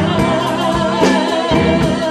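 A woman singing a soul ballad, holding one long note, backed by a live band.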